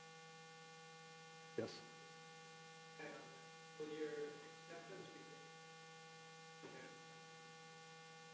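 Steady electrical mains hum, with a faint, distant voice asking a question off-microphone in the middle.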